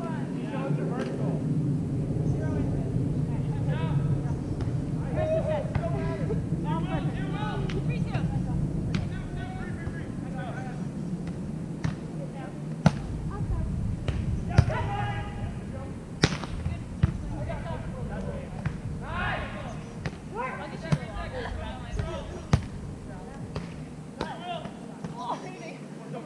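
Players' voices calling and talking on a sand volleyball court, with sharp slaps of hands striking a volleyball several times, the loudest two about a second and a half apart near the middle.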